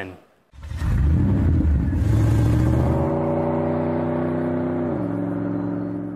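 Car engine revving: it rises in pitch over the first couple of seconds, holds a steady note, then drops about five seconds in and fades out.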